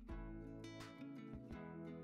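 Soft background music with plucked guitar notes.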